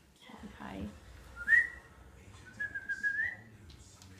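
A person whistling: a short, loud rising chirp about one and a half seconds in, then a longer held whistle that lifts in pitch at its end.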